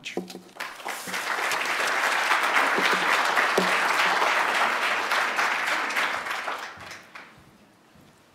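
Audience applauding. The clapping builds up in the first second, holds steady, then dies away about seven seconds in.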